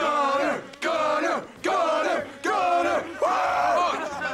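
A group of men chanting 'Gunner!' together in a steady rhythm, a little more than one shout a second, five times, the last one drawn out.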